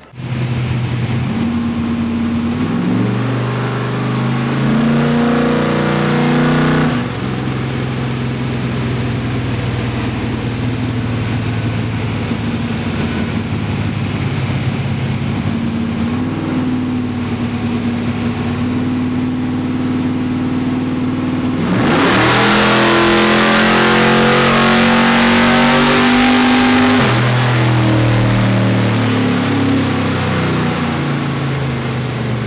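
1964 Mercury Comet's 289 cubic-inch V8, fuelled by a Holley EFI throttle body, running on a chassis dyno. It revs up briefly early on, holds steady, then about 22 seconds in goes louder under hard throttle with the note climbing for about five seconds before it steps down.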